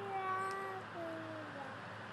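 A toddler singing two long, drawn-out notes. Each slides gently down in pitch, and the second, shorter one starts lower, about halfway through.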